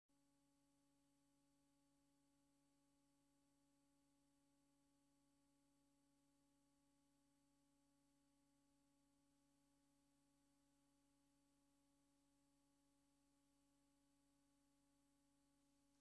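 Near silence, with only a very faint steady hum.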